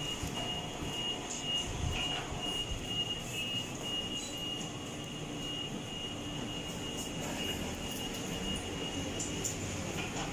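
Steady hum of claw-machine arcade ambience, with a thin constant high-pitched whine that stops near the end and a few faint clicks.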